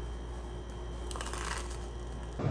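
Close crackly rustling and crunching of a toasted bagel, handled right at the microphone and bitten, with a brief louder crunch a little past the middle.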